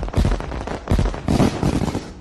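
Fireworks bursting: a run of sudden bangs and crackles, with several loud bursts about half a second to a second apart.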